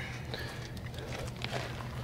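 Faint rubbing and patting of a bare hand smoothing wet refractory cement, with a few small ticks, over a low steady hum.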